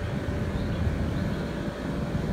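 Steady low background rumble of open-air rooftop ambience, with a faint steady hum running under it.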